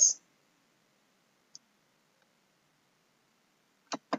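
Near silence broken by two short clicks of a computer mouse: a faint one about a second and a half in, and a sharper one just before the end, as the presentation advances to the next slide.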